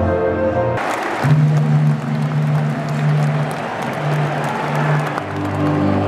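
A national anthem playing over the stadium PA ends about a second in to applause and cheers from the crowd. Long held notes of music follow over the crowd noise.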